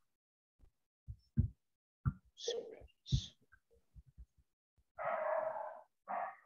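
Faint, scattered sounds from participants' open microphones on a video call: short soft clicks, a couple of brief hushed voice sounds, and a noisy, unpitched sound lasting about a second near the end.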